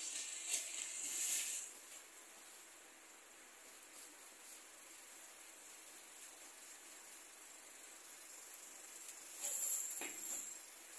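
Scissors cutting through stiff pattern paper, with loud paper crackling and rustling in the first second and a half and again near the end as the cut piece is handled; quieter in between.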